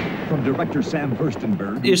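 Mostly speech: a man's voice from the film trailer's soundtrack, with a rumble fading away at the start, and a man beginning to talk near the end.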